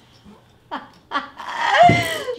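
A woman's high-pitched laughter in short bursts, building to the loudest burst near the end.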